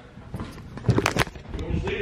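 A handheld camera being handled and turned around: rustling with a couple of sharp clicks about a second in.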